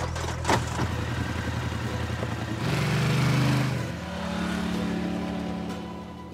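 Engine of an off-road utility vehicle running steadily. It grows louder for about a second around three seconds in, then falls back.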